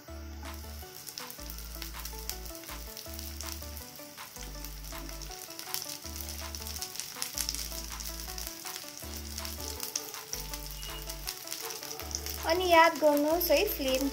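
Sliced onions frying in ghee in a kadai, sizzling with a steady stream of small crackles; chopped cabbage joins them partway through and keeps sizzling.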